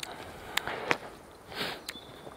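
Footsteps of a person walking on a forest floor, with a few light clicks, and a short sniff about one and a half seconds in.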